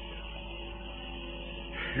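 A steady, low drone of several held tones during a pause in a man's talk, with no speech or sudden sounds.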